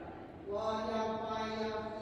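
A single voice chanting in the liturgy, holding one long steady note that begins about half a second in.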